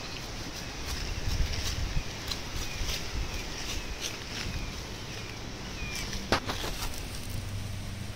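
Outdoor yard ambience of wind and rustling, with a few faint short chirps, a single sharp click about six seconds in, and a low steady hum coming in near the end.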